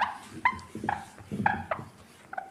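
Whiteboard being erased, rubbing in short strokes with a quick series of short pitched squeaks, about two a second.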